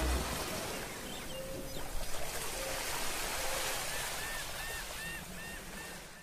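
Beach ambience: an even wash of surf noise, with a string of faint, high, arching chirps about three a second in the last couple of seconds.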